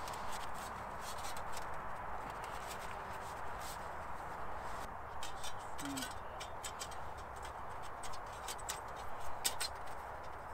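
Light metallic clicks and ticks from the thin perforated panels of a titanium folding firebox stove as it is unfolded and fitted together by hand, in scattered bunches over a steady background hiss.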